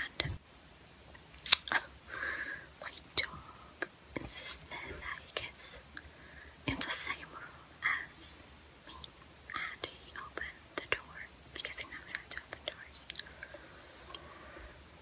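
Close-miked soft whispering broken up by sharp wet mouth clicks and lip smacks; near the end a lollipop goes into the mouth and is sucked.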